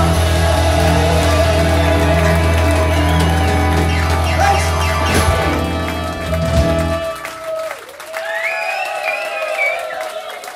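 Live rock-soul band with horns, keys, guitar, bass and drums holding out a loud final chord with a few drum hits, then stopping abruptly about seven seconds in. The crowd cheers and claps after the band stops.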